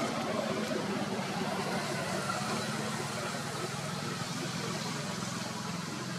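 A steady, even engine hum, like a motor vehicle idling, under constant background noise.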